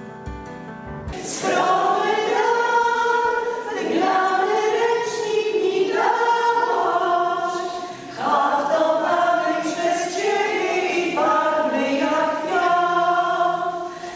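A women's folk singing group singing a song together, coming in about a second in and going on in phrases of about four seconds with short breaks between them.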